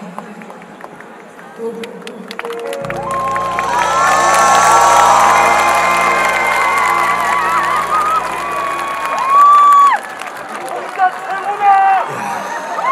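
The trot song's backing track ends on a long held final chord while a large outdoor audience cheers and claps, with several shrill shouts rising over it. Loud calls and cheers go on after the music stops.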